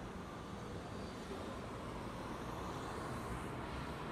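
Street traffic: a vehicle's low, steady rumble of engine and tyres, growing a little louder near the end as a pickup truck draws close.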